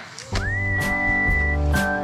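Background music starts just after a last spoken word: a whistled melody that slides up into one long held note, then a few shorter lower notes, over a bass line and a steady beat.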